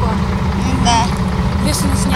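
A steady low rumble runs throughout, with a brief spoken word from one of the boys about a second in.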